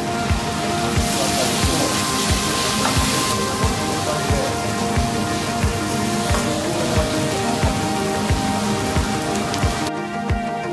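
Background music with a steady beat over the sizzle of onions frying in a hot pan. The sizzling swells loudly for a couple of seconds just after water is poured into the pan, then settles.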